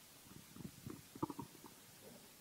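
A quiet pause in a hall, with faint scattered rustling and a few soft clicks just over a second in.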